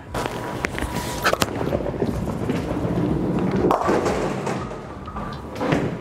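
A Columbia 300 bowling ball rolling down a bowling lane: a steady rumble, with a few sharp knocks in the first second and a half and a fuller, noisier stretch about four seconds in.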